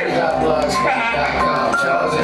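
Hip-hop beat played loud over a club sound system, with a rapper's voice on a handheld microphone over it.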